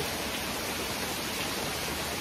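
Steady, even hiss of background noise.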